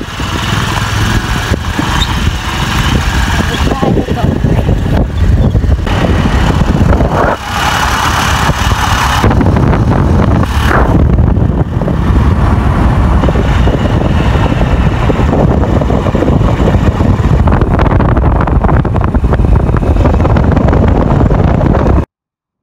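Heavy wind buffeting the microphone of a phone held by a pillion rider on a moving motor scooter, with the scooter running underneath it.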